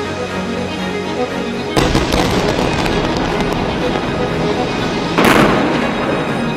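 Two explosions over a steady music bed: a sudden blast about two seconds in, after which the noise stays loud, and a sharper, louder blast near the end.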